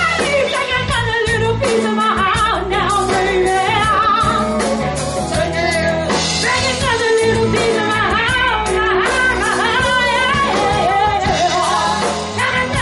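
Live rock-pop cover band playing, with a woman singing lead into a handheld microphone over bass and drums.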